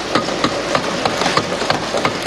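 Members of the house thumping their desks in applause: a rapid, irregular clatter of many wooden knocks, several a second, over a general din of the chamber.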